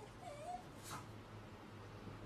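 A Shiba Inu giving a short, faint whimper that wavers in pitch, followed about a second in by a brief soft noise.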